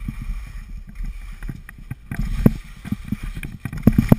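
Wind buffeting an action camera's microphone during a ski descent, with the rumble of skis running over snow. Irregular sharp knocks from bumps in the run break through, loudest a little past halfway and near the end.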